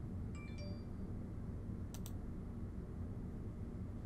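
Faint steady room hum, with a brief faint tinkling chime near the start and a quick double click about two seconds in, typical of a computer mouse click advancing a slide.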